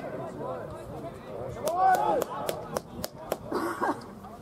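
Footballers shouting and calling to each other during play, loudest about two seconds in, with a run of sharp smacks roughly a third of a second apart through the middle.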